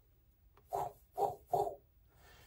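A man making three short wordless mouth noises through pursed lips, each a fraction of a second long and about half a second apart.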